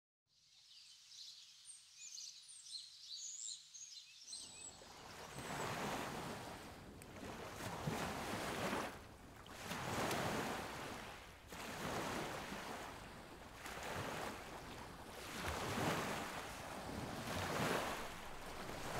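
Faint high bird chirps. From about four seconds in, a rushing outdoor noise that swells and fades roughly every two seconds takes over.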